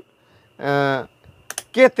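Two or three sharp clicks from the rotary range selector switch of a YX-360TR analog multimeter being turned by hand, between stretches of a man's speech.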